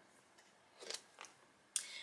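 Faint rustling and crinkling of photos and cards being handled in a clear plastic pocket page of a scrapbook album, in a few short bursts about a second in and again near the end.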